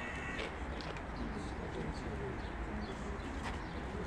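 Birds calling in the open air: scattered short high chirps and some lower calls over a steady low background rumble.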